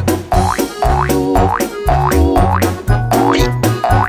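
Instrumental break of an upbeat children's song: a bouncy bass line and drums, with repeated quick rising glides that sound like cartoon boings.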